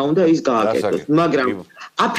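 A woman speaking Georgian.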